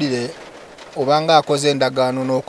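A man's voice drawing out a long, level-pitched hesitation sound, "aaa", in the middle of speaking.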